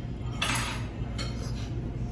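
A brief clatter of dishes and cutlery about half a second in, with a weaker one a moment later, over a steady low hum of the room.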